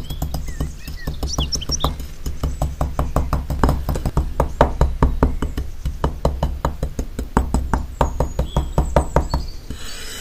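Small rusty metal trowel blade scraping and tapping through sand in quick repeated strokes, several a second, with low rumbling handling noise underneath.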